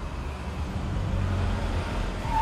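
An SUV driving by at night: a steady low engine and tyre rumble that grows a little louder.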